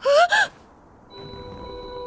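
A woman's voice gives two short, strained vocal cries in quick succession. About a second later, held music tones fade in and slowly build.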